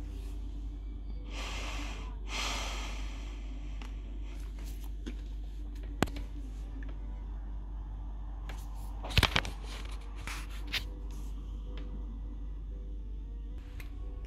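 A person's long breathy exhale about one to three seconds in, over a steady low hum, with a sharp click about six seconds in and a short cluster of knocks near nine seconds from a phone being handled.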